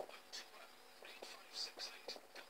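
Faint whispering: short hissy sounds with a few small clicks.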